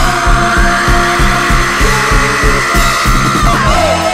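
Background music: a song with a steady beat and held tones, with no vocals in this stretch.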